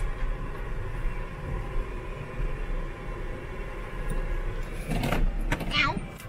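Car's engine and tyres running with a steady low rumble, heard inside the cabin as it moves slowly through a car park. A brief voice is heard near the end.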